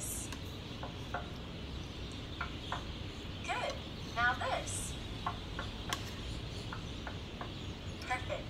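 Short high-pitched voice sounds with gliding pitch, two or three in quick succession a few seconds in, over a steady low hum, with a few faint light clicks.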